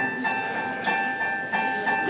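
Piano playing an introduction: held chords with a few single notes struck over them.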